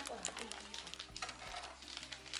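Quiet handling of a cardboard gift box: a few light clicks and taps as its contents are lifted out, under faint voices.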